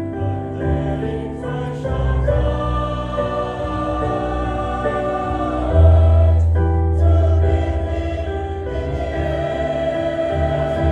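A mixed choir of young men and women sings a gospel song together over instrumental accompaniment with held bass notes. The bass swells louder about six seconds in.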